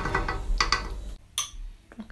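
Serving spoon scraping and knocking against a pot of stew and a plate, a dense run of quick clicks and scrapes for about a second, then a single sharp clink.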